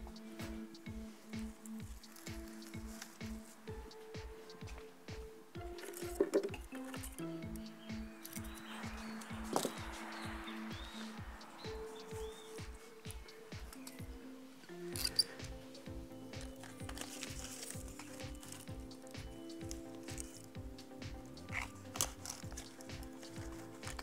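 Background music with a steady beat, growing fuller about two-thirds of the way through. Under it are occasional faint rustles and clicks of pine branches and pine cones being handled.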